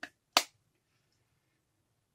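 A single sharp click about a third of a second in, then near silence.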